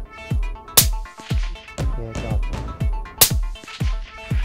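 Two sharp rifle shots about two and a half seconds apart from a .22-250 rifle, the loudest sounds present, over electronic background music with a steady thumping beat.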